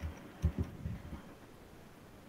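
A few soft, low thumps in the first second or so, the strongest about half a second in, over faint room noise.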